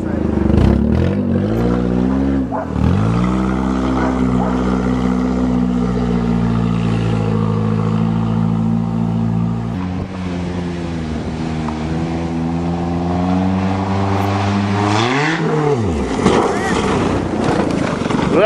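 1992 Toyota Corolla's four-cylinder engine under hard throttle on the run-up to a jump. The revs dip and climb once about two seconds in, then hold steady for a long stretch. About fifteen seconds in they flare up and fall away sharply as the car takes the jump.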